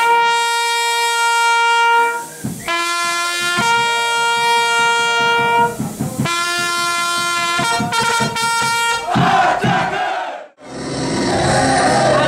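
Solo trumpet playing long held notes in a low-then-high two-note call, three times over, then a short higher note. A burst of crowd noise follows, and after a sudden break, pub music with a steady beat and crowd chatter near the end.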